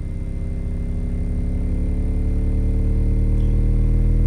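Nemesis Audio NA-8T subwoofer playing a deep bass test tone in free air, the tone slowly rising in pitch and growing louder as the sweep climbs up from 20 Hz on clean, unclipped power. It is very clean sounding, with a slight hum that is probably the basket vibrating against the wooden board it sits on.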